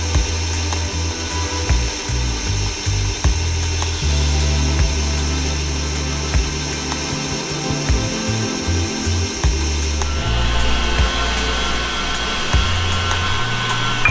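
KitchenAid stand mixer running with its whisk, whipping egg whites into a meringue base, under background music. The mixer's high steady whine stops about ten seconds in.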